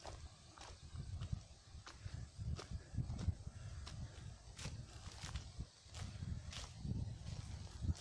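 Footsteps of a person walking along disused railroad tracks, crunching on the ballast and wooden ties at a steady walking pace, over a low rumble.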